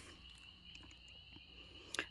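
Faint, steady high-pitched chorus of evening insects, with a few faint ticks.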